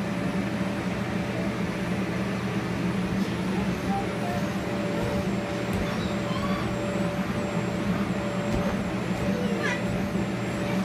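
Electric blower fan of an inflatable bounce house running steadily: a constant low drone with a faint held whine above it. Children's voices come through faintly now and then.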